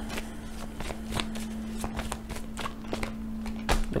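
Tarot cards being shuffled and handled, a run of light, irregular snaps and rustles.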